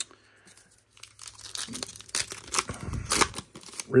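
A foil trading-card pack wrapper being torn open and crinkled in the hands: a run of irregular crackling rips that starts about a second in, loudest around two and three seconds in.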